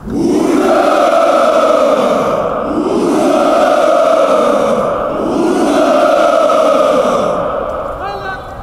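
Hundreds of cadets in formation shouting together in unison, three long drawn-out cheers in a row, the traditional Russian military "Ura!"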